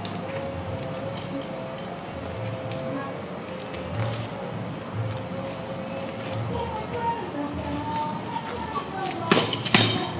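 Sparring swords clashing in free fencing: two quick, sharp clacks just before the end, as the fencers close in and trade blows that land as two hits.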